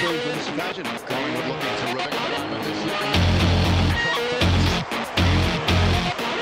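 Rock song playing, with heavy bass notes pulsing in about three seconds in.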